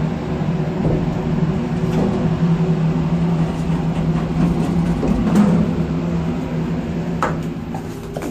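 Nechushtan-Schindler hydraulic elevator running: a steady low hum with a constant droning tone. A sharp knock comes about seven seconds in, as the car arrives and the doors open.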